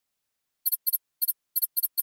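Marker pen squeaking across a board as it writes: a PowToon hand-writing sound effect. It comes as a quick run of about six short double squeaks, starting about half a second in.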